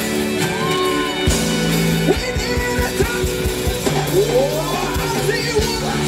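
Live gospel band playing on stage: drum kit, bass guitar and keyboards, with held bass notes and a steady drum beat. Wordless vocal calls glide up and down over the band.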